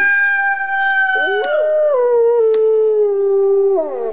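Wolf howling: long, drawn-out howls, a second lower howl joining about a second in and sliding down in pitch as it ends near the end.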